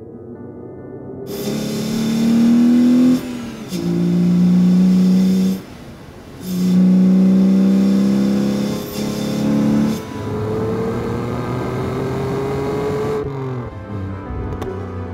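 BMW E46 330i's straight-six engine revving hard through the gears, its note climbing in each gear and breaking off briefly at each gear change, about three seconds in, around six seconds and near ten seconds, then running on at lighter throttle with a slowly rising note near the end. Music plays underneath.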